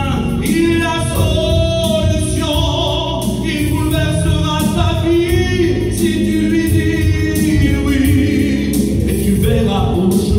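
A hymn sung by a man into a microphone over instrumental accompaniment, with long held notes.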